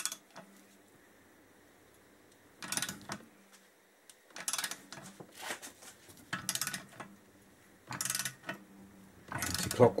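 Socket ratchet clicking in short bursts as its handle is swung back and forth, turning a stud removal tool to unscrew a cylinder stud from the engine crankcase. About six bursts come roughly a second apart after a quiet start.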